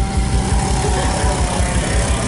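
Honda-based drag-race motorcycle engine running at high revs as the bike launches off the start line and pulls away.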